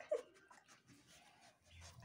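Black-and-tan dog whimpering: one short, faint whine just after the start, then quiet. It is whining for food while it waits its turn.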